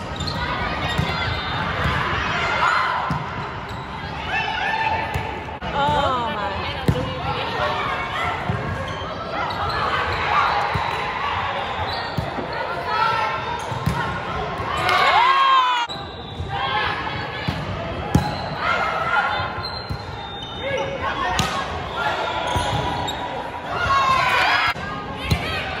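Volleyball rally on a gym court: sharp knocks of the ball being passed and hit, mixed with players' calls and shouts and spectators' voices throughout.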